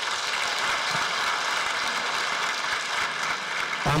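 Audience applauding: many hands clapping in a dense, steady patter that stops as speech resumes near the end.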